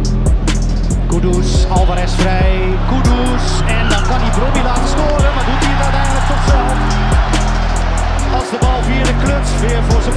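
A hip-hop beat with deep bass notes and steady hi-hats, the bass cutting out briefly about eight and a half seconds in. Match crowd noise and a commentator's voice run underneath.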